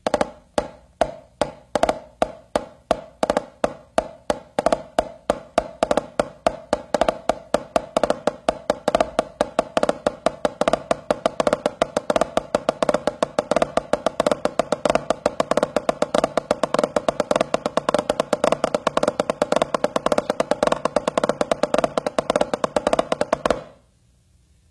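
Drumsticks on a drum playing a variation of the single flammed mill rudiment, with flammed ruffs (a grace note followed by a double stroke) in place of the flams, giving an uneven, discombobulated pattern like a broken gallop. It starts at a slower pace, picks up speed over the first several seconds, and stops abruptly near the end.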